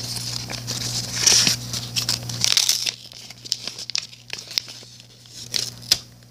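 A homemade paper card pack being torn open by hand: paper ripping and crinkling, loudest in the first two or three seconds, then quieter rustling and crackles as the cards are handled.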